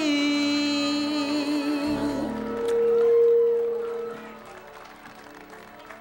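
Two voices singing a duet, ending the song on a long held note; the sound swells and stops about four seconds in, leaving only quiet background sound.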